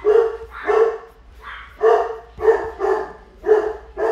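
A dog barking repeatedly, a run of about six short barks.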